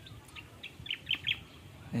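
A bird chirping: a quick run of six or seven short, high chirps in the first second and a half.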